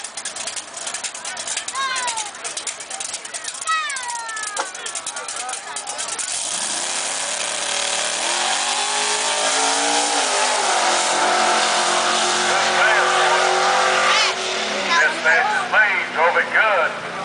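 Fox-body Mustang drag car's engine revving up and accelerating away down the drag strip: the note climbs from about six seconds in, drops back once near ten seconds, and runs loud until near the end, when it fades under voices.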